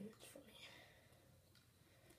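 Near silence: a faint whisper in the first half second, then only room tone.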